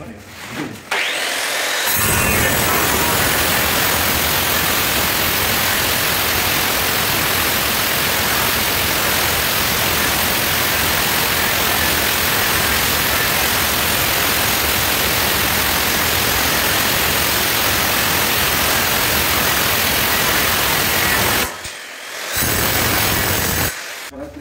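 Handheld angle grinder dry-cutting a black granite slab: a loud, steady grinding cut that starts about two seconds in. The cut breaks off briefly near the end, then resumes for a moment.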